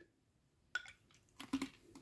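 Mostly quiet, with a few faint small clicks and taps of plastic from handling a plastic water bottle and the plastic nozzle funnel: one a little before the middle, then a short cluster near the end.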